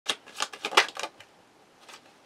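Tarot cards being handled and dealt: a quick run of about six crisp card snaps in the first second, then a faint click near the end.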